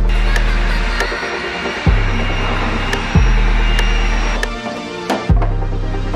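Background electronic music with deep, sustained bass notes that start sharply at a slow, even pace, with light ticks above.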